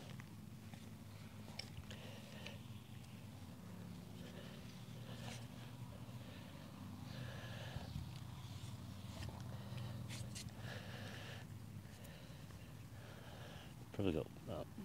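Faint, sparse scrapes and knocks of a garden fork working soil and potatoes being lifted out by hand, over a steady low hum.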